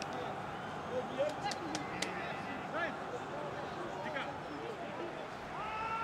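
Players' and coaches' shouts and calls echoing around an empty football stadium over steady background hiss, with a few faint knocks of the ball.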